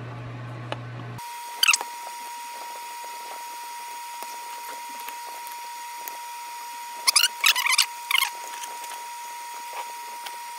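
Short high-pitched squeaks from hands working thin birch panels and a squeeze bottle of wood glue while the panels are glued into a box: one falling squeak about two seconds in, and a cluster of squeaks about seven to eight seconds in. Under them runs a faint steady tone.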